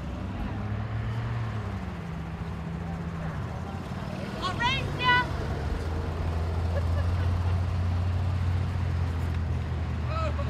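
A Club Car golf cart running, a low steady drone whose pitch shifts in the first few seconds and then holds steadier and stronger in the second half. About halfway through, two short rising-and-falling voice calls stand out as the loudest sounds.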